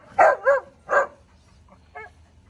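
A dog barking: a quick run of short, high-pitched barks in the first second.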